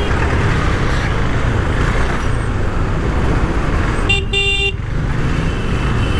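Riding a 2017 KTM Duke 390 single-cylinder motorcycle slowly through city traffic: a steady low rumble of engine and wind on the bike-mounted microphone. A vehicle horn honks once, for under a second, about four seconds in.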